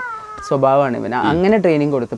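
A dog's high, thin whine, falling slightly in pitch and lasting about half a second, then a man talking.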